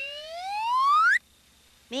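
A slide-whistle sound effect, one smooth pitch rising steadily for about a second and a half and then cutting off suddenly.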